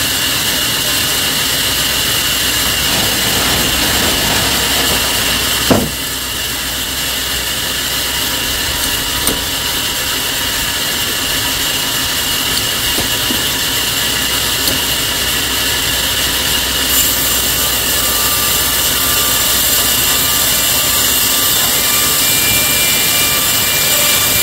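Sawmill machinery running steadily with a loud, even noise, with one sharp knock about six seconds in.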